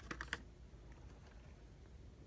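A few light plastic clicks in the first half second, as blister-packed toy cars on their cards are handled, then faint room tone.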